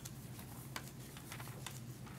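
Pages of a Bible being turned, with soft, scattered paper rustles and flicks over a low steady hum.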